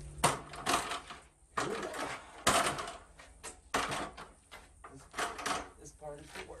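Electric random orbit sander winding down after being switched off, its hum fading over the first second and a half. It is followed by a string of irregular knocks and clatters as a fiberglass stepladder is picked up and set down on concrete.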